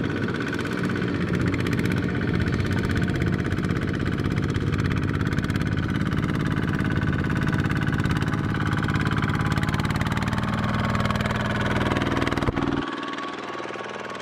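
Single-cylinder diesel engine of a Kubota two-wheel tractor running steadily under load as it pulls a loaded cart through mud. About a second before the end the sound turns quieter and thinner.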